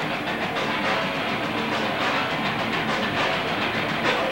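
A hardcore punk band playing live, with distorted electric guitars and drums in a fast, even beat, heard loud and blurred through a camcorder microphone in a club.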